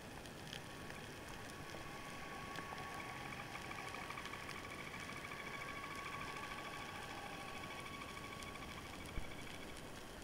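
Underwater ambience picked up by a camera below the surface: a constant fine crackling, with a steady whine that comes in about a second in and a higher, rapidly pulsing tone that joins it a little later, both fading out near the end. A single sharp knock sounds near the end.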